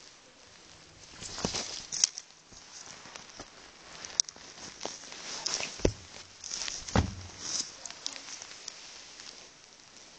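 Irregular rustling of bedding with a few sharp knocks and thumps, the strongest about two, six and seven seconds in, as a cat tussles with a hand on a bed.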